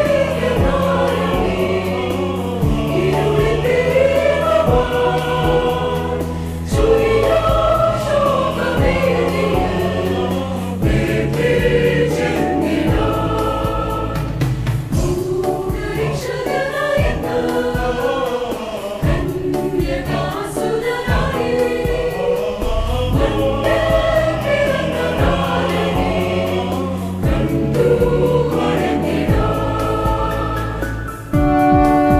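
Mixed choir of men and women singing a Malayalam Christmas carol in several-part harmony, over steady held low notes.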